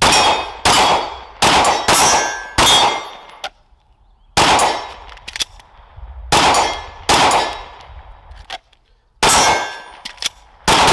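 Glock pistol firing about nine shots in quick strings of two or three with short pauses between, each a sharp crack followed by a ringing tail.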